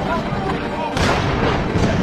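Battlefield sound effects of artillery and gunfire, a dense rumbling din with a heavy blast about a second in and another near the end, with voices mixed underneath.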